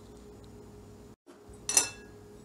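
A single sharp clink of a glass bowl against a ceramic bowl near the end, with a brief ring, as flour is tipped out; before it only a faint steady room hum.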